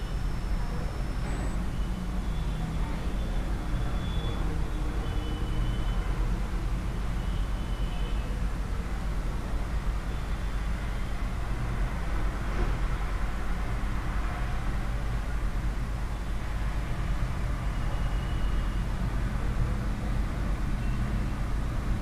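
Steady low rumble of background noise with a light hiss, and a few faint, brief high tones coming and going.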